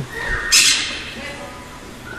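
A caged bird squawks once, a short harsh call about half a second in.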